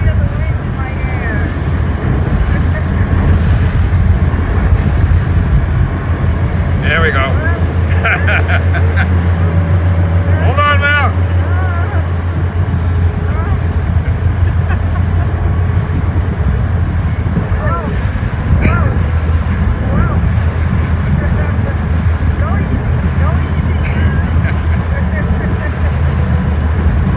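Motorboat running at speed across open water: a steady low engine rumble mixed with rushing water and wind noise, with brief voices about a third of the way in.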